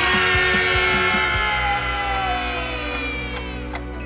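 Pop-rock backing track with drums and bass. Over it, a girl's long scream starts suddenly and slowly falls in pitch over about three seconds.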